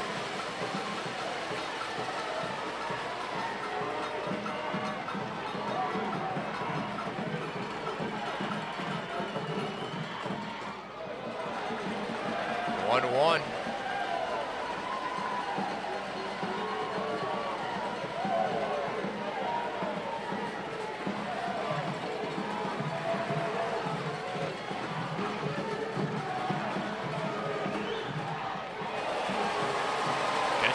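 Ballpark crowd chatter with music playing over it, steady throughout, and a short, steeply rising whistle about thirteen seconds in.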